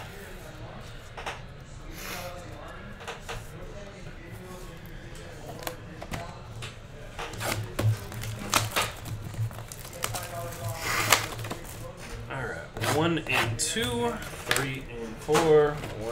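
A cardboard trading-card hobby box being handled and opened and its foil packs set out, making scattered clicks, taps and rustles.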